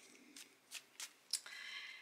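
Faint hand shuffling of a tarot deck: a few short snaps of card edges, then a brief soft rustle near the end.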